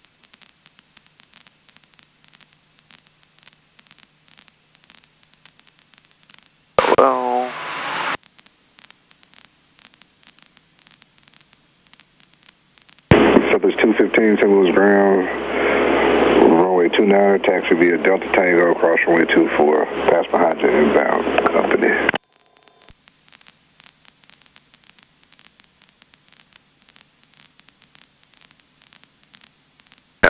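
Voice transmissions on the aircraft radio, heard through the cockpit intercom. A brief call comes about seven seconds in and a longer one runs from about thirteen to twenty-two seconds. Each sounds thin and narrow and switches on and off abruptly, with a low steady hiss between them.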